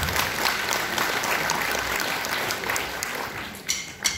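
Audience applauding, the clapping thinning out near the end as sharp, evenly spaced percussion clicks begin.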